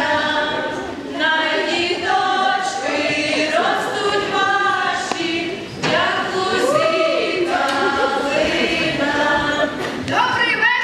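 A group of voices singing a Ukrainian folk carol in sustained phrases, without instruments.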